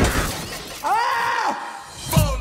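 Cartoon sound effect of an ice floor shattering: a sudden crash that fades over about half a second with the scatter of breaking ice. About a second in comes a short pitched cry that rises and falls.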